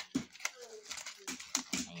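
Thin plastic carrier bag crinkling and crackling in quick irregular bursts as it is handled.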